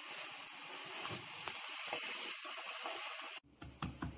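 Onions frying in hot oil in a kadai, a steady sizzle. About three and a half seconds in the sizzle cuts off and a few sharp knocks begin: garlic being crushed on a wooden board.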